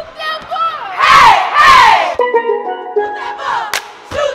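Group of young voices yelling and whooping loudly, with steady musical notes and more voices joining about halfway through.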